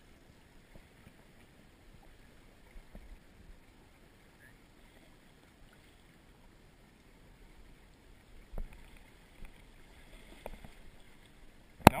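Faint steady rush of river water flowing, with a few soft knocks and one sharp, loud knock near the end.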